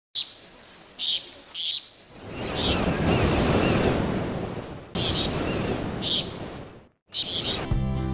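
Ocean surf washing with birds chirping in short calls about once a second; the surf swells a couple of seconds in. The sound drops out briefly near the end and music begins.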